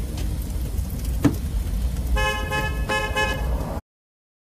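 Car horn honking twice, each honk a little over half a second, over a low vehicle rumble. There is one sharp knock a little over a second in, and all sound stops abruptly just before the end.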